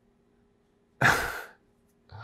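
A man's single short, breathy sigh about a second in: an amused exhale following a laugh.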